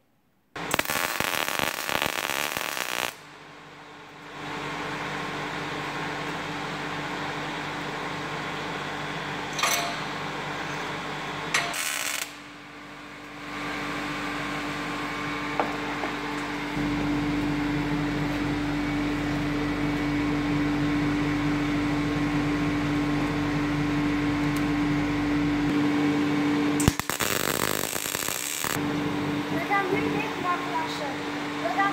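MIG welder tack-welding steel: three short bursts of crackling arc, near the start, about twelve seconds in and near the end, over a steady electrical hum that gets louder about halfway through.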